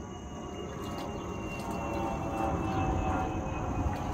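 Low engine rumble with a faint hum on top, slowly growing louder.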